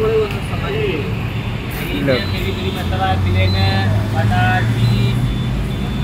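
Roadside traffic noise: a steady low engine drone that swells in the middle, with voices and chatter around it.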